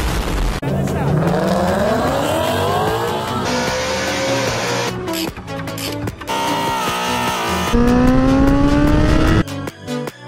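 Edited montage sound: a loud blast at the start, then a car engine revving up twice, its pitch climbing each time, mixed with music.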